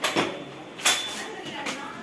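A few sharp clicks and knocks as a power drill fitted with a core bit is handled, the loudest a little under a second in.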